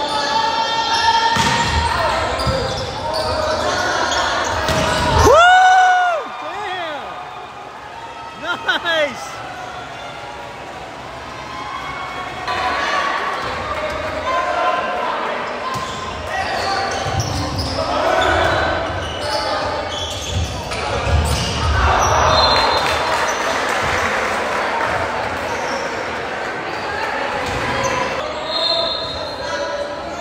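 Volleyball rallies in a large gymnasium: the ball being bounced and struck, sneakers squeaking on the hardwood court, and players' and spectators' voices echoing in the hall. A loud shout comes about five seconds in, and crowd noise rises a little past the middle.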